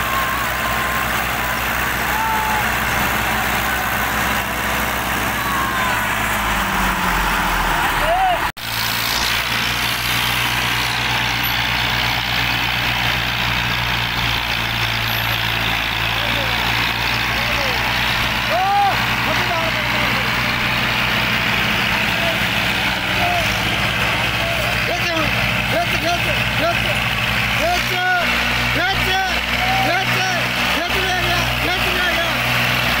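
Two Massey Ferguson tractors, a 135 and a 240, straining against each other on a tow chain in a tug-of-war, their diesel engines working hard under heavy load in a steady drone. People shout over the engines, and the sound breaks off for an instant about eight seconds in.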